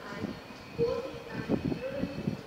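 A train moving through the station tracks at a distance, with faint voices over it.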